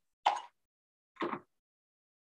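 Two brief knocks about a second apart: a paintbrush tapping in a dish of thick red watercolour paint as it is loaded with colour.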